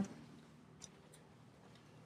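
Faint footsteps on a tiled floor, two light clicks about a second in, over a quiet background hum.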